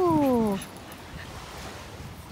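A woman's long, sing-song 'hello' to a dog, falling in pitch and ending about half a second in, then only faint background noise.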